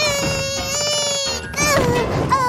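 A cartoon character's voice straining in one long, high, held cry that lasts about a second and a half, breaking off into a shorter wail, over background music.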